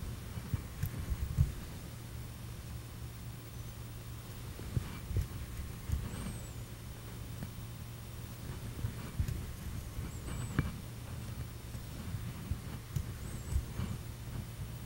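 Small petal brush dabbing and stroking oil paint onto a stretched canvas, heard as soft, irregular low knocks, loudest about a second and a half in. A steady low hum runs underneath.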